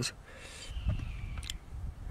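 Two light clicks about a second and a half-second apart, as a gloved hand handles the bits in a metal bit index case, over a low outdoor rumble and a faint thin high tone that drifts slightly down.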